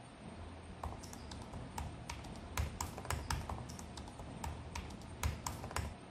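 Typing on a Lenovo laptop keyboard: irregular key clicks that start about a second in and stop just before the end.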